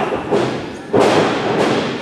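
A wrestler's body landing on the wrestling ring's boards: a loud thud about a second in, after smaller knocks, echoing in the hall.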